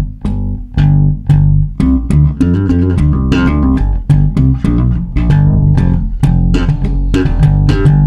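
Electric bass guitar played slap-style with the thumb: a quick run of percussive thumb strikes on the strings, each leaving a ringing low note.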